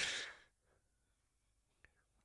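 A man's breathy sigh as a laugh trails off, lasting about half a second at the start, then near silence with one faint click near the end.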